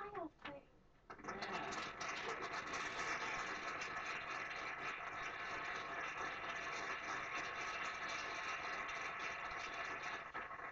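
A crowd applauding steadily, an even clatter of many hands that starts about a second in, after the end of a sung note. It is TV audio picked up by the microphone in a small room.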